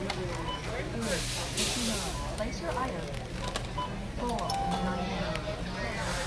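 Busy warehouse-store ambience: background voices and in-store music over a steady low hum, with a brief burst of hiss about a second in.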